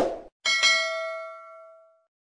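Subscribe-button notification sound effect: a click, then a bell-like ding with several ringing tones that fades out over about a second and a half.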